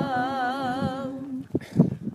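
Voices singing a long held note, one with a wide vibrato over a steadier lower tone, that breaks off a little past halfway; a few short, faint vocal sounds follow in the gap.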